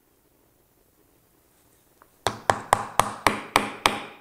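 Hammer tapping glued wooden dowels down into tight-fitting drilled holes in a wooden base: a quick, even run of sharp taps, about four a second, starting a little over two seconds in.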